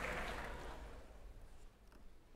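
Quiet hall ambience: the last of a louder sound dies away in the hall's reverberation over about the first second, leaving a low steady hum and a few faint ticks.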